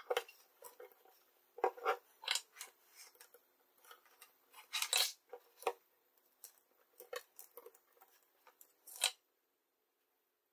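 Irregular small metallic clicks and rattles as a 2.5 mm power plug and its wires are handled in the alligator clips of a helping-hands stand while the connections are made up for soldering. The sound stops abruptly just after nine seconds.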